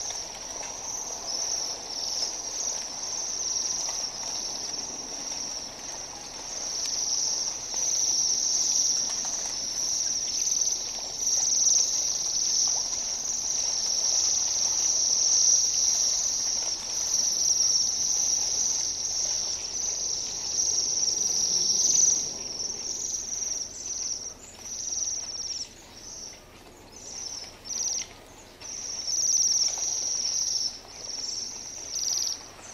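Bohemian waxwings calling with high, thin trilling calls, many overlapping into a continuous shimmer. After about twenty-three seconds the calling breaks up into separate short trills with gaps between them.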